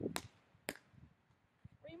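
Basketball bouncing twice on asphalt, two sharp smacks about half a second apart, then the dribbling stops.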